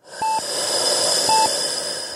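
Hospital patient monitor beeping: a short, single-pitch beep about once a second, twice here, over a steady hiss of room noise that starts abruptly.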